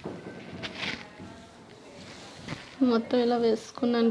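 Water splashing and sloshing as drumstick leaves are rinsed by hand in a steel bowl, with a couple of sharper splashes in the first second. A voice starts near the end.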